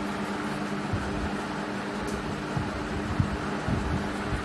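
Steady background hum and hiss, with a few faint clicks of a metal spoon against a ceramic plate as dry flour and seasonings are stirred.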